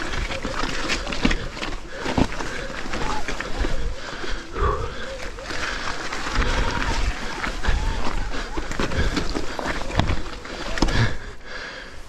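A mountain biker's heavy breathing and grunts of effort while struggling up a steep, rocky climb on an e-bike, with the bike and tyres knocking on loose stones now and then.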